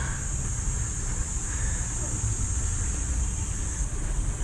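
Outdoor ambience: a steady low rumble under a constant high-pitched drone of insects.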